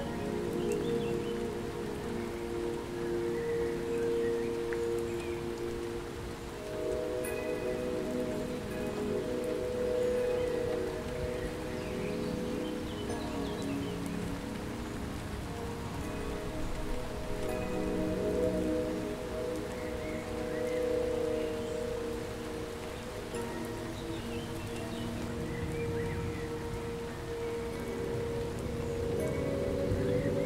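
Slow ambient music of long held chords that shift every few seconds, with chime-like tones over a steady rain-like hiss.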